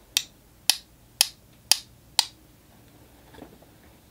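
Five sharp clicks, about two a second, as one paintbrush is tapped against another to spatter nearly undiluted watercolour paint off the loaded kolinsky sable round brush.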